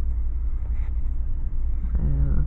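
Steady low rumble of background noise, with a faint brief rustle a little under a second in.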